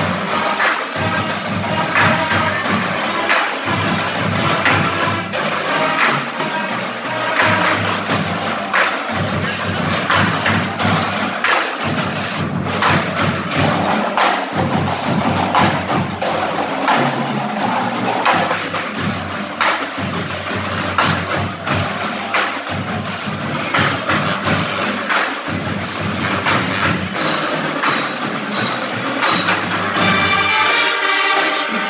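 Marching band playing, led by its percussion section in a fast, dense rhythm of sharp clicking strokes and drum hits.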